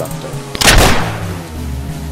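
A single staged pistol gunshot sound effect, one sharp loud crack about half a second in that dies away quickly, over steady background music.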